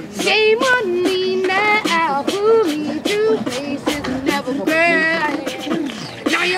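Voices singing a wordless, sliding melody over beatboxed percussion. The beat is steady, about three to four hits a second.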